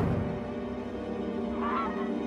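Sustained, dark orchestral soundtrack music with a brief, wavering squawk from a cartoon penguin near the end.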